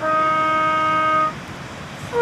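A trumpet holds the last note of a phrase, one steady pitch that stops about a second and a quarter in, leaving only faint background noise.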